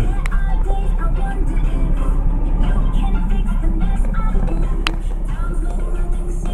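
Steady low rumble of road traffic and passing cars, with music and muffled voices mixed in.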